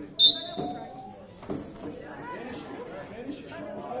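Spectators' voices murmuring and chattering in a large hall. Just after the start there is one short, sharp, high-pitched squeal, the loudest sound, which fades within half a second.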